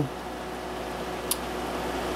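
Heavy rain pouring down, a steady hiss, with the low hum of a running portable generator underneath. A single short click about two-thirds of the way through.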